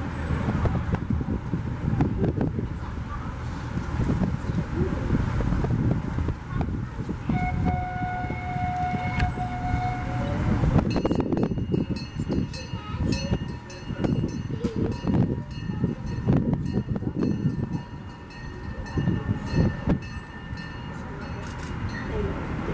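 Busy outdoor background of distant voices and wind, with a steady horn-like tone held for about three seconds near the middle, then high ringing tones pulsing evenly through the second half.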